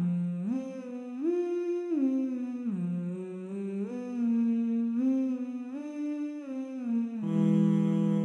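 Synthesized male voices of a Vocaloid quartet singing sustained chords without clear words. The parts glide together up and down in steps about every half second to a second.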